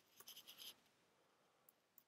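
Near silence, with a few faint computer-keyboard taps in the first half second or so.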